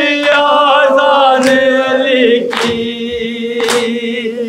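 A man singing a mournful elegy (masaib) unaccompanied into a microphone, holding long notes that waver and glide slowly downward. A short, sharp stroke falls about once a second through the singing.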